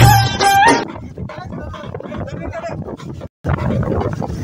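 Recorded song music that stops abruptly under a second in, giving way to the quieter voices of a gathered crowd, with a sudden brief dropout of all sound near the end.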